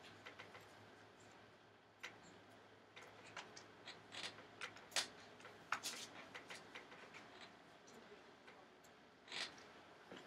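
Faint, scattered clicks and light taps of a small screwdriver working the hinge screws of an opened MacBook Air, with the small screws being handled; the sharpest click comes about halfway through.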